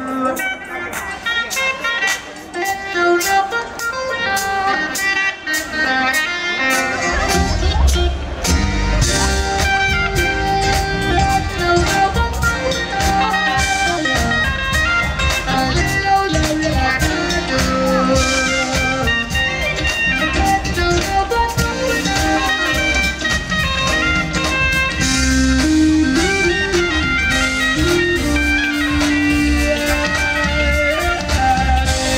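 A live funk band playing, with soprano saxophone and electric guitar over keyboards. The first seconds are light, and about seven seconds in the bass and drums come in and the groove fills out.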